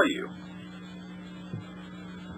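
Steady low electrical mains hum on a telephone call-in line, after a man's last word trails off at the very start.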